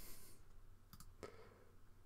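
Faint computer mouse clicks, two or three close together about a second in, over near-silent room tone.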